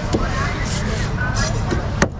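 Indistinct voices and a steady low rumble of road traffic fill the background. A large knife slicing through a flathead grey mullet loin on a wooden board gives a few light taps as the blade meets the wood.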